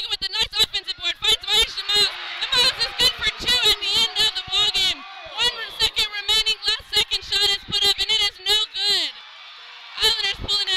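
A play-by-play commentator shouting excitedly over a cheering crowd as a game-winning basketball shot goes in. The shouting breaks off about a second before the end, leaving the crowd noise.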